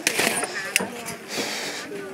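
Voices of other tourists chatting, with a few sharp knocks of footsteps on the wooden steps and a brief rustle of clothing close to the microphone about one and a half seconds in.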